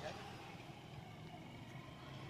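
Faint, steady outdoor street background noise with no distinct event.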